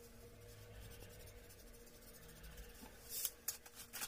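Coloured pencil scratching faintly on card as a drawing is coloured in. About three seconds in come a few sharp clattering clicks of pens and pencils knocking in a plastic box.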